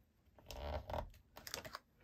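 A clear photopolymer stamp being handled and peeled on its acrylic block: one short, faint rustle about half a second in, then a few light ticks near the end.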